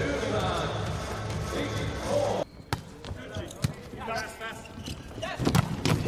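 Arena crowd noise with a pulsing rhythmic chant that cuts off abruptly about two and a half seconds in. Then comes a quieter rally: several sharp smacks of hands striking a volleyball, two of them close together near the end.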